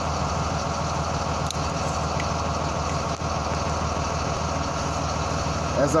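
School bus engine idling steadily, heard from inside the cab, while the air compressor builds air brake pressure toward governor cut-out.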